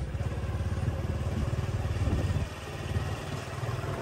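Small motorbike engine running with a steady low beat as it rides along, easing off and getting quieter about two and a half seconds in.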